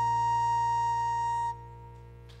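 Flute holding the song's final long note steady over a low sustained note; the flute stops about three-quarters of the way through, leaving the low note ringing on alone.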